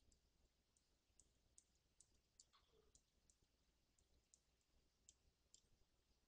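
Near silence: faint room tone with light, irregular clicks, about two a second.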